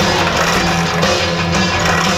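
Rock music with electric guitar, playing loud and steady.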